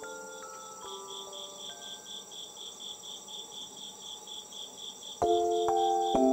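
Crickets chirping in a steady pulsing rhythm, about four or five chirps a second, over a continuous high trill. Soft, slow held music notes sound underneath, and a louder chord comes in about five seconds in.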